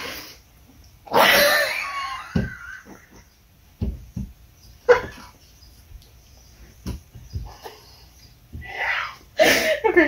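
Two people laughing uncontrollably: a loud, high-pitched squealing laugh about a second in, then short stifled giggles and breaths, with laughter building again near the end.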